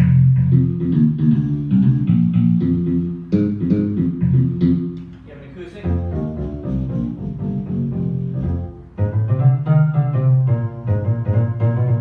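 Viscount Concerto 5000 digital piano played with its electric bass voice: a bass line of low notes in phrases, with higher notes played over it.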